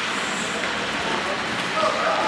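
Ice hockey play in an indoor rink: a steady scraping hiss of skate blades on the ice, with a voice calling out near the end.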